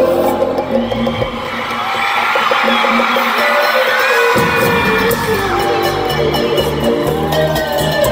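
Live bachata band heard through a phone microphone in an arena, with the crowd cheering. The bass and drums drop out for the first few seconds, leaving high parts and voices, then the full band comes back in about four seconds in.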